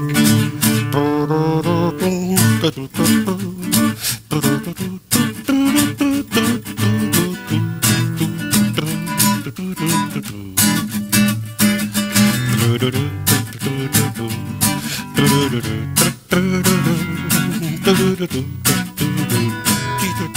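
Nylon-string classical guitar strummed in a steady rhythm, an instrumental run of chords closing the song.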